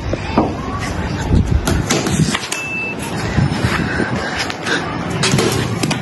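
Steady background traffic noise with scattered sharp knocks from a street-cricket game in play. A short high beep sounds about two and a half seconds in.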